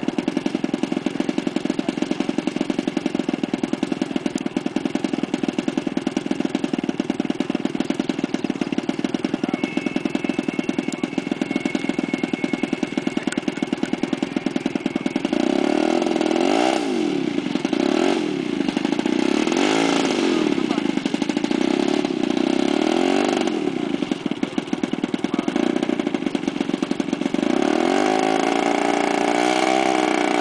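3W 85 cc two-stroke gasoline engine of a large radio-controlled Spitfire, turning a three-blade propeller. It idles steadily for about fifteen seconds, then is throttled up and down in repeated surges as the plane taxis, and revs up again near the end.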